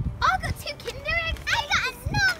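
Young girls' high-pitched voices chattering excitedly, in short overlapping exclamations.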